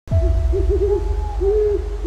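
An owl hooting: a quick run of four short hoots, then one longer hoot near the end, over a low steady rumble.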